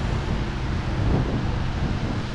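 Steady wind noise on the camera microphone.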